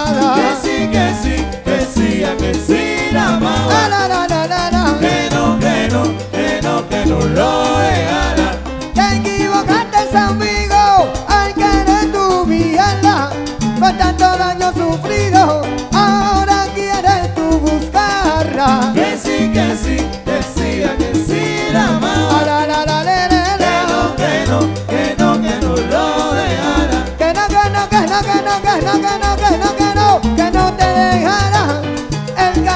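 Live salsa band playing an instrumental stretch of the song, a digital piano montuno over a steady repeating bass line and percussion.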